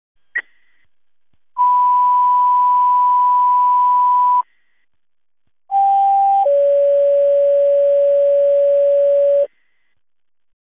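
Fire dispatch radio tone-out over radio hiss: a brief key-up chirp, a steady alert tone held about three seconds, then a two-tone page, a short higher tone stepping down to a longer lower one. These are the tones that open a dispatcher's ceremonial 'last call' broadcast for a fallen firefighter.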